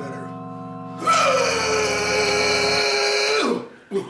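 A sustained low synthesizer-like chord, joined about a second in by a man's long drawn-out vocal note that slides down in pitch and then holds for a couple of seconds before cutting off.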